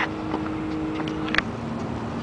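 Steady background hum with a few faint clicks. A sharp click comes about one and a half seconds in, where the hum drops to a lower pitch.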